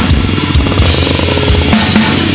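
Heavy metal band recording playing loud, with a drum kit hammering out rapid strokes under the band.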